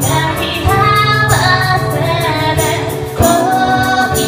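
Live acoustic pop song: a woman singing the lead melody, accompanied by acoustic guitar and electric keyboard.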